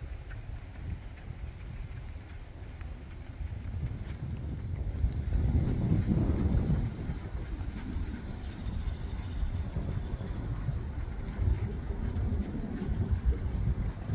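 A horse's hooves beating on sandy arena footing at a trot, under wind rumbling on the microphone. The sound is loudest around the middle.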